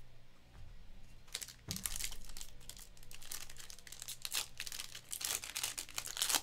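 Foil wrapper of a Panini Donruss basketball card pack crinkling as it is picked up and torn open. It comes in irregular bursts of crinkling that start about a second in and come thickest near the middle and near the end.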